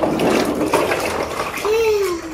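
Ice water sloshing in a plastic drum as a man sinks down into an ice bath, with a short falling voice sound near the end.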